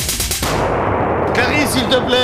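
Comedy dynamite stick going off: a sudden blast about half a second in cuts the music off, and its noise dies away over about a second.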